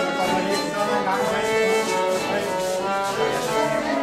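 Danish folk dance tune played live on fiddle with other instruments, a lively melody over a steady dance beat.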